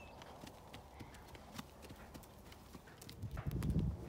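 A pony's hooves clip-clopping on the ground in an irregular run of beats as it is worked on the lunge line. A louder low rumble comes in near the end.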